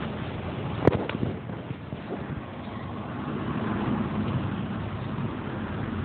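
Steady outdoor background noise, strongest low down, with a sharp click about a second in and a fainter one just after.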